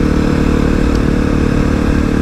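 Kawasaki KLX250SF's single-cylinder engine running at a steady cruise, its note holding one pitch without revving, with a low rumble on the helmet-mounted mic.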